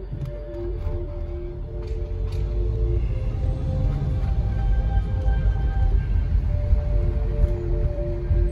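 Music playing on the car radio inside the cabin: slow, held notes over a deep bass.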